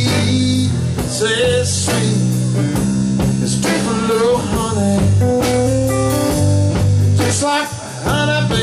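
Live rock band playing an instrumental passage: electric guitar lead with bent notes over electric bass and drum kit. The sound drops briefly near the end.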